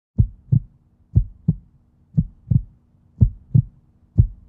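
Heartbeat sound effect: pairs of short, deep thumps in a lub-dub rhythm, about one pair a second.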